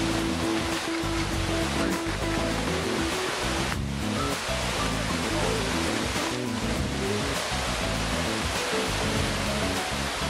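Instrumental background music with slow held notes, over the steady rush of a river running high through rapids.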